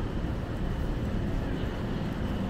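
Downtown street ambience: a steady low rumble of city traffic, with no distinct events standing out.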